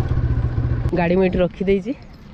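Scooter engine running steadily at low speed, then switched off with a click about a second in.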